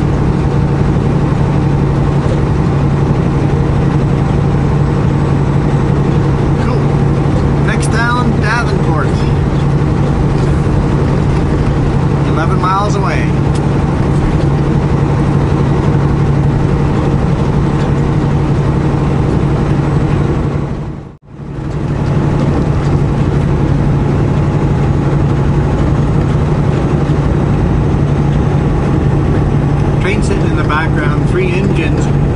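Semi truck's engine and road noise droning steadily inside the cab, with a constant low hum. The sound drops out briefly about two-thirds of the way through.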